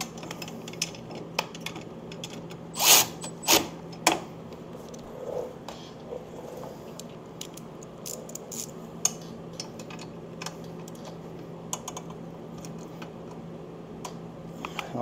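Scattered light metal clicks and clanks of hand tools on a motorcycle's chrome footboard bracket as it is adjusted, with a few louder clanks around three to four seconds in.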